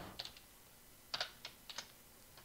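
Faint computer keyboard keystrokes: a single click near the start, then a short run of about five clicks a little after a second in.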